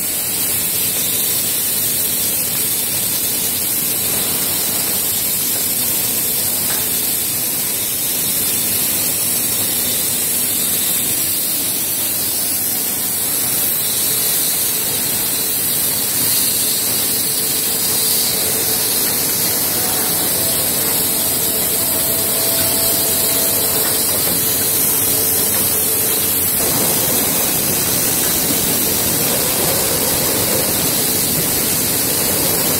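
Steady hissing noise of a plywood mill's veneer core composer line in operation, even throughout, with a faint low hum under it.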